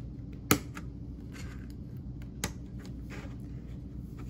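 Plastic Snap Circuits pieces being pressed together by hand: one sharp snap about half a second in, then a fainter click about two seconds later, over a low steady room hum.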